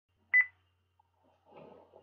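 A short, high-pitched electronic double beep, once, about a third of a second in.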